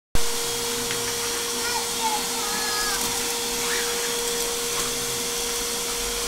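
Shop vac running steadily: a constant rush of air at the hose nozzle with a steady hum.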